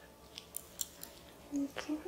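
A few faint, light clicks as the knitted panel and its metal knitting needles are handled, followed near the end by a brief low hum of a voice.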